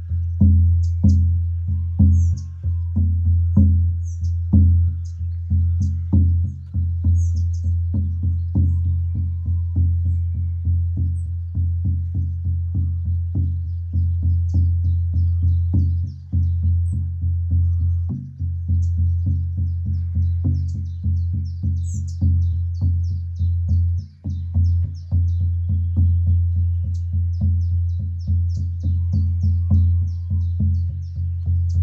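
An 18-inch shamanic frame drum of thick deerskin on a willow hoop, beaten with a soft-headed beater in a steady, fast beat of about three strokes a second. Each stroke carries a deep, rich, sustained boom that runs on into the next.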